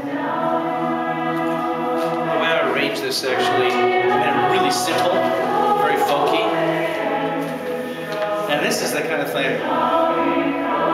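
A group of voices singing together unaccompanied, with long held notes.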